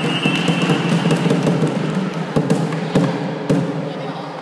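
A volleyball being hit and striking the hard floor: four sharp thumps spread over a few seconds. Under them runs a steady, echoing din of children's voices in a large hall.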